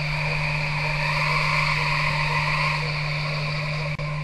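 A steady low hum with an even hiss over it, unchanging throughout, briefly interrupted by a cut near the end.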